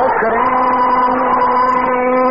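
A man's chanting voice in a Shia mourning lament (latmiya), holding one long note at a steady pitch.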